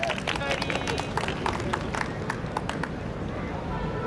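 Scattered hand clapping that thins out over the first few seconds, with faint voices in the background.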